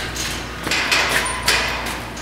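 Blue metal rolling stair ladder being pushed across a concrete floor, giving a few sharp metallic knocks and rattles that echo in the large empty room.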